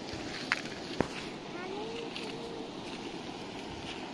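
Steady rush of a river running over a pebbly bank, with two sharp clicks about half a second and one second in.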